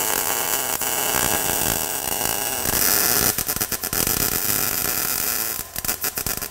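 Arc welding on thin automotive sheet steel: a steady crackling, buzzing hiss as new patch pieces are finish-welded into a rusted unibody subframe mount. The arc breaks briefly near the end.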